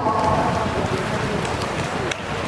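Steady, dense hiss-like din of an indoor swimming hall, full of small crackles, with the last of the announcer's voice echoing around the hall at the start.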